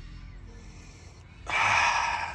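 A person taking one long, loud sniff through the nose in the last half-second, smelling a just-applied leather-scent odor-eliminator spray, over quiet background music.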